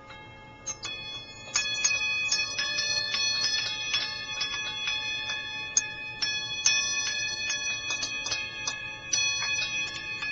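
Small metal bells struck in quick, irregular succession, their high ringing tones overlapping into a continuous shimmer. A few strikes come about a second in, and then it grows dense.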